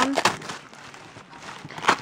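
Tissue paper and packaging rustling faintly as a hand rummages in a gift box, with one sharp crackle of paper near the end.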